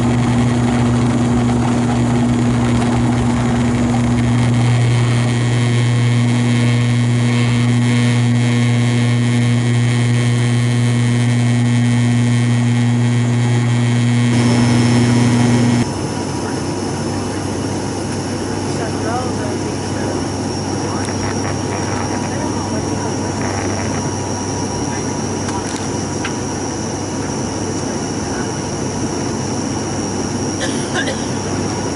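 Cabin noise of a turboprop airliner heard from a seat beside the propeller: a loud, steady low propeller drone with a hum an octave above it while the aircraft rolls down the runway. About sixteen seconds in it cuts abruptly to a quieter rushing cabin noise with a thin high whine as the aircraft descends and touches down.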